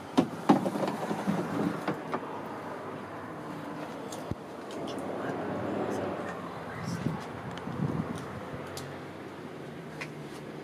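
Hand-cranked window regulator in a 1938 Buick door: a few sharp clicks, then the glass rubbing as it slides in its channel, with a few small knocks near the end.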